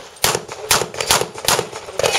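Handgun fired in a rapid string: about four sharp shots, each a little under half a second apart.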